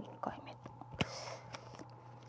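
Quiet handling sounds of a pen on paper: a few soft taps, then one sharper click about a second in followed by a short breathy hiss.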